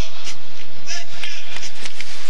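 Ice-hockey arena crowd noise during a faceoff, with a few sharp clacks of sticks on the ice as the puck is dropped and won.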